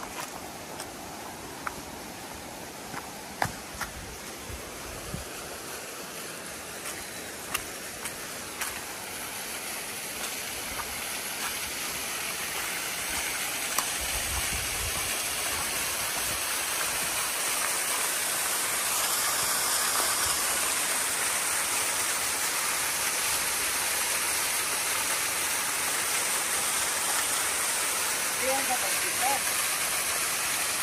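A small waterfall splashing into a rock pool: a steady rushing hiss that grows louder over the first twenty seconds as the falls are approached, then holds steady. A few sharp clicks sound in the first nine seconds.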